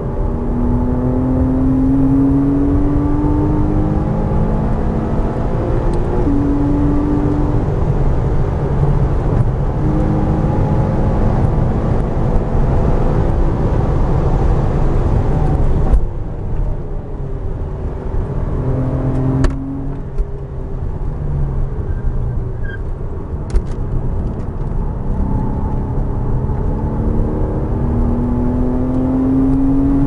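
Porsche Cayman S's flat-six at full throttle, heard from inside the cabin, its note climbing through the revs again and again as it runs up through the gears. About sixteen seconds in the note falls away as the car lifts off and slows for a corner, then it climbs again near the end.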